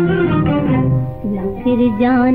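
An old Hindi film song playing, with a string accompaniment of plucked and bowed strings.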